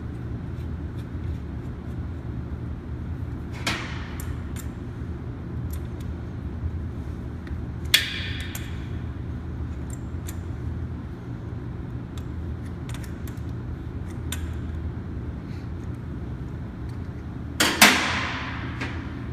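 Adjustable wrench and brass fittings clinking as the sensor line is fitted and tightened on a backflow preventer: scattered light metal clicks, with sharper clinks about four and eight seconds in and a louder cluster near the end, over a steady low hum.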